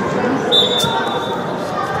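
Indoor youth football match: players' voices and shouts echo around the hall, and the ball is kicked once. A short, high, steady whistle sounds about half a second in.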